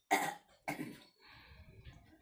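A person coughing twice, two short harsh coughs about half a second apart.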